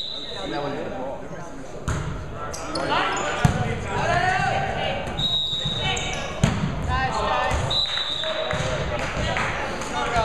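A volleyball rally in a gym: the ball is struck with two sharp hits, about three and a half and six and a half seconds in, among players' shouts echoing in the hall. Short high-pitched squeals sound twice in the second half.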